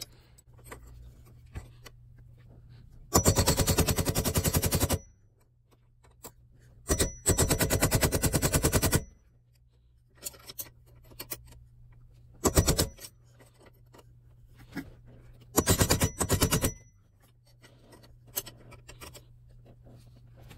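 Rapid light hammer taps, metal on metal, from a claw hammer driving a flathead screwdriver against a headless steering-lock shear bolt on a BMW E39 steering column to work it loose. They come in four quick runs: two of about two seconds each, then two shorter ones, with quiet handling in between.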